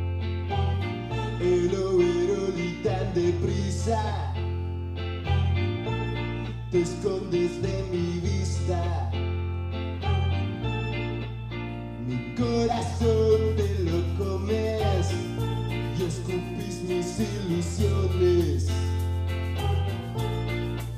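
Live rock band playing a song on electric guitars, bass guitar and drums. The cymbals grow louder about halfway through.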